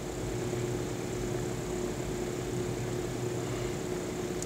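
Steady background hum and hiss of a room, with a low steady tone and no distinct sounds.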